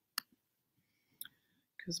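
Near silence broken by two short clicks, a sharp one just after the start and a fainter one about a second later.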